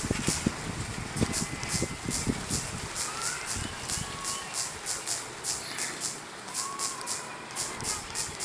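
Quick, light clicks of typing on a smartphone's on-screen keyboard, a few taps a second. They run over low background rumble that thins out about three seconds in.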